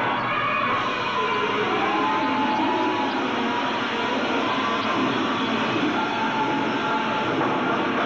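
Live hard rock band playing loudly: a dense wall of distorted electric guitar and cymbal wash with held, slowly gliding tones, heard through a muffled, lo-fi tape recording.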